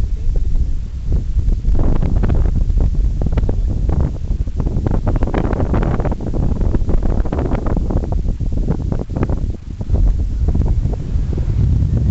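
Airflow buffeting the microphone of a camera carried by a paraglider in flight: a loud, gusty rumble that swells and dips.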